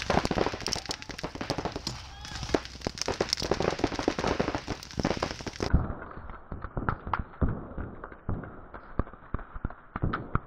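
Paintball markers firing in rapid strings of sharp pops. The sound turns duller and muffled a little past halfway.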